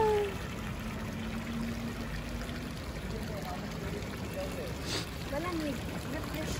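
Water pouring steadily from a stone street fountain's spouts into its basin.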